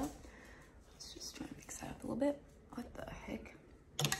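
A woman speaking quietly, close to a whisper, in short soft phrases.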